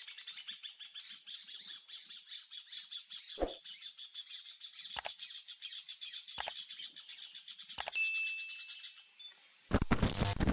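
Birds chirping in a dense, fast-repeating chorus, overlaid by four sharp clicks about a second and a half apart. A brief steady tone follows, then a loud glitchy burst just before the end.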